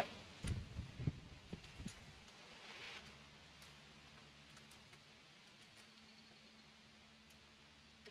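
Faint clicks and taps of small metal parts being handled, a few in the first two seconds, as the clamp screws of a scope's ring mounts are worked loose and the rings fitted onto a rifle rail. After that it fades to near silence with a faint steady hum.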